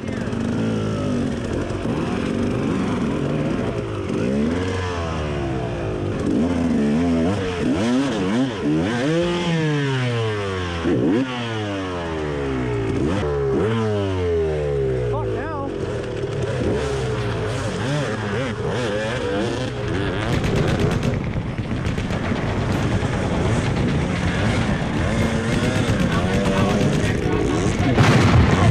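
Several enduro dirt bike engines, two-stroke KTMs among them, revving up and down at once with their pitches crossing, as the bikes are worked up a steep dirt climb. From about twenty seconds in, the revving turns harsher, with the engine held high and its pitch fluttering as the bike struggles for grip near the end.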